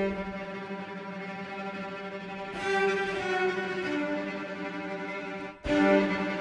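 Sampled cello section from the VSCO 2 Community Edition library playing sustained tremolo notes. A low note is held, a higher note joins about two and a half seconds in, the harmony shifts a little later, and a fresh note starts near the end.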